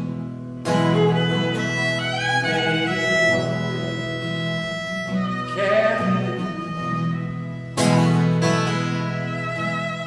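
Violin and acoustic guitar playing a piece together, the guitar striking fresh strummed chords about a second in and again near the end.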